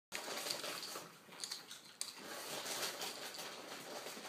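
A Pomeranian crunching a tortilla chip: a run of dry, crackly crunches.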